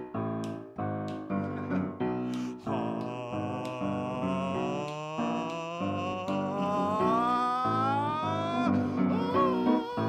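Grand piano playing repeated chords under a man's singing voice, which holds one long note that slides steadily upward, wavering, for several seconds before breaking off near the end. It is the big sustained high note that closes a jazz song.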